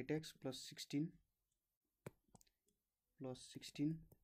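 A person speaking in short phrases, with a pause in the middle broken by one sharp click about two seconds in and a few faint ticks after it.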